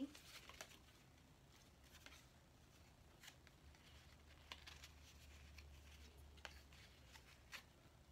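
Faint, scattered taps and rustles of cardboard pieces and adhesive tape being handled, over a low steady hum.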